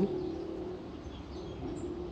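Faint outdoor background with birds calling, including a low steady call and a few short high chirps in the second half.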